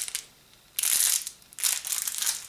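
A small clear plastic candy packet crinkling in the hand, in short rustling bursts about a second in and again near the end.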